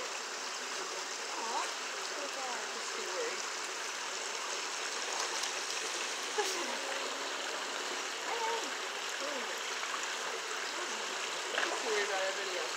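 Steady rushing of running water, with faint voices murmuring in the background.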